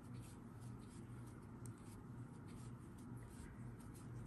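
Faint, irregular soft scratching of a crochet hook and yarn as the hook pulls the yarn through to make chain stitches, over a steady low hum.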